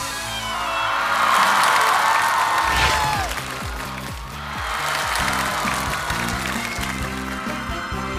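Studio audience applause and cheering over stage music, with a falling tone about three seconds in. Then upbeat band music with a steady beat begins.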